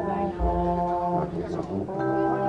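Drum and bugle corps brass playing long held chords that shift about half a second in and again about a second later, over a deep bass note.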